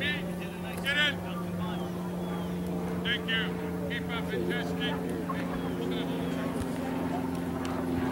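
Distant short shouts and calls from players and spectators across a soccer field, over a steady low mechanical hum.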